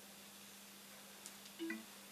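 Quiet room tone with a steady low hum. A faint tick comes just past the middle, then a brief, short pitched sound near the end.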